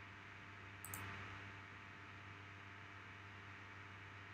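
Near silence: faint room tone with a steady low hum, and a single computer-mouse click about a second in.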